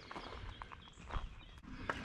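Faint footsteps crunching on gravel, a few soft irregular steps.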